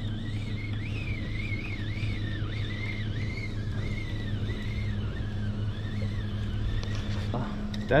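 Boat motor running steadily with a low hum, while a faint high whine wavers up and down in pitch above it.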